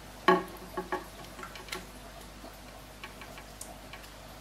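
Small plastic clicks and taps from handling an aquarium sponge filter and its airline tubing while the tubing is fitted on. There is one short, sharper sound right at the start, then several light clicks over the next second and a half.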